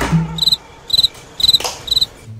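Cricket chirps: four short, high trills evenly spaced about half a second apart.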